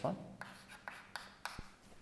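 Chalk writing on a blackboard: a few faint, short scratching strokes as a number is written.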